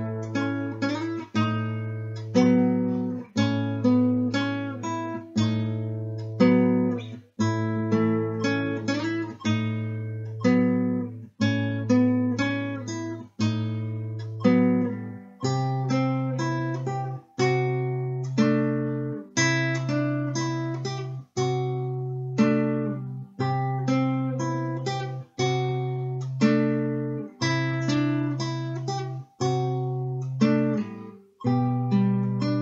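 Nylon-string classical guitar fingerpicked slowly, at tempo 60: plucked treble notes over a low bass note struck about every two seconds. About halfway through, the bass steps up to a higher note.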